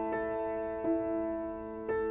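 Background piano music: slow single notes, a new one struck about once a second and left to ring.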